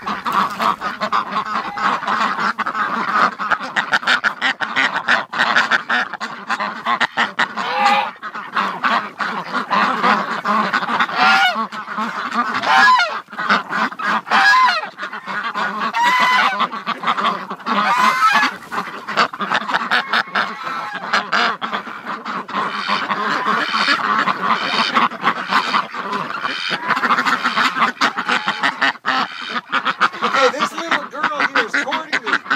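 A flock of domestic Pekin and Rouen ducks quacking, many loud calls overlapping without a break.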